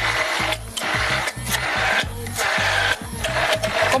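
Electric immersion blender whirring in a tall beaker as it blends a mayonnaise, running in several short bursts with brief dips between them.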